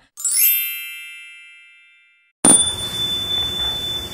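A bright chime sound effect rings once and fades away over about two seconds. About two and a half seconds in, a hissing static-like noise with a steady high whistle starts abruptly and runs on.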